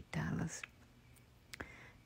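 A soft-spoken woman's voice, briefly at the start, then near quiet broken by a single faint click about one and a half seconds in.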